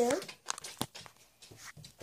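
A child's voice ends a word, then a few short, faint clicks and rustles of hands handling the camera as it is swung around.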